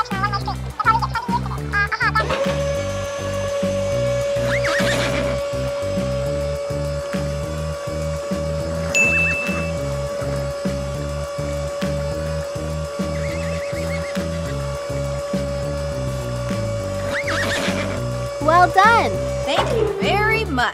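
Cartoon background music with a steady beat, under a long steady hum that starts about two seconds in and stops just before the end. A horse whinnies in wavering calls near the start and again near the end.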